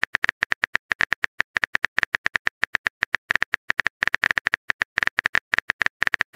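Phone keyboard typing sound effect: rapid, irregular key clicks, about eight to ten a second, as a message is typed out.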